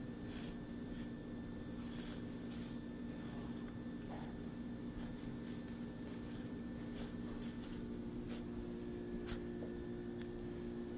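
Pen scratching across a sheet of paper on a countertop in irregular short strokes, hand-lettering a note, over a steady low background hum.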